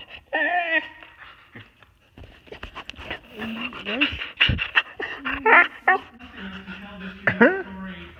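Siberian husky "talking": a run of short whining, howl-like calls that rise and fall in pitch, four or five in all. The husky is asking to be let outside.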